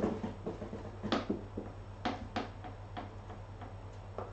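A cat scrabbling and pouncing in a cardboard box: a thump at the start, then a run of sharp knocks and scuffs, the loudest about a second in and a pair about two seconds in.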